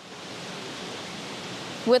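Steady, even background noise of an airport terminal concourse, with no distinct events in it, getting a little louder just after the start. A woman's voice starts at the very end.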